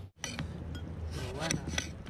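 Knife slicing through a cucumber onto a plate, the blade clicking sharply against the plate about four times.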